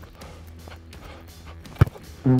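Football boot kicking a football: one sharp thud near the end, over quiet background music.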